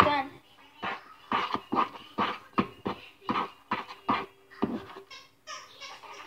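A young girl's voice in a run of short, rhythmic vocal bursts, about two or three a second, that are not words.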